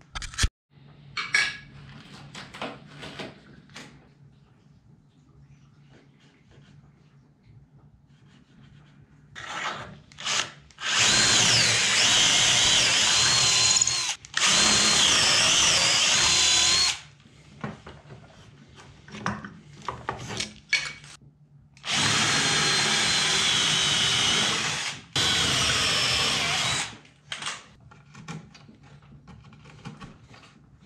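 Cordless drill boring into a wooden roof batten, in two runs of about six and five seconds, each with a short stop midway, the motor's whine wavering in pitch as it bites. Light clicks and knocks of wood being handled come in between.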